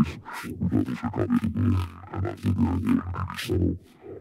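Neurofunk bass sound made from recorded spoken dialogue that has been pitch-shifted, distorted and filtered, playing back as a growling low tone in choppy, speech-like bursts with hissy tops.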